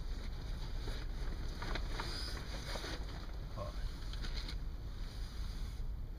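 Sleeping bag and bedding rustling as a person shifts and sits up, with a few light clicks, over a steady low rumble. A short "oh" comes a little past halfway.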